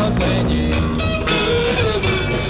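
A 1969 beat-rock demo recording of a band with electric guitars, bass guitar and drums, playing continuously, with guitar to the fore.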